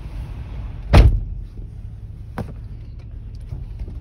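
A car door slams shut about a second in, heard from inside the vehicle over a steady low rumble, with a lighter knock about a second and a half later.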